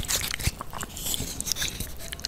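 Close-miked ASMR eating sounds of jajangmyeon noodles in thick black bean sauce: wet, sticky crackling with many small clicks, and a low thump about half a second in.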